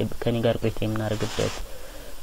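Speech only: a man lecturing in Amharic.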